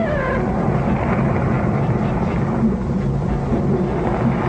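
A low, steady rumble with a droning hum: the monster film's underwater sound effect.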